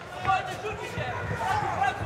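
Raised voices, several people shouting at once over arena noise.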